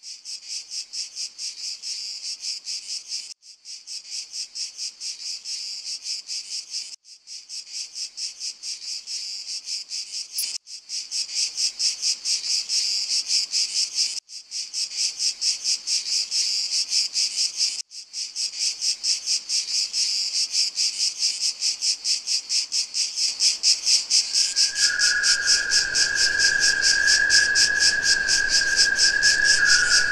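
Opening of an electronic track: a rapid, cricket-like high chirring pulse, broken by brief gaps every few seconds. A low rumble swells in later, and a steady high tone enters near the end as the sound grows louder.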